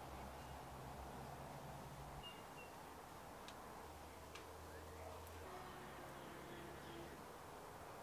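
Quiet background: a faint low steady hum, with a couple of soft light clicks about three and a half and four and a half seconds in.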